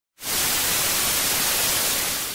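Television static: a steady, even hiss that starts a moment in.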